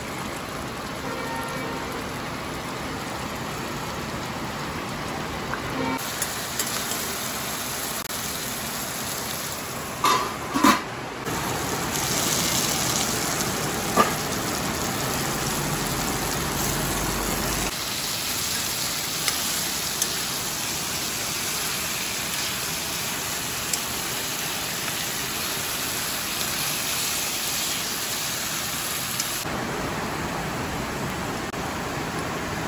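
Steady hiss of heavy rain, with a few sharp knocks about a third of the way in.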